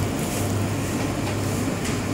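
Steady market-street background noise with a low, even hum underneath; no single event stands out.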